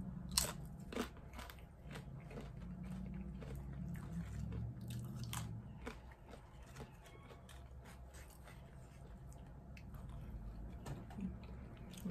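Crunching and chewing of a crisp chip with guacamole: a couple of loud crunches in the first second or so, then quieter chewing with small crunches.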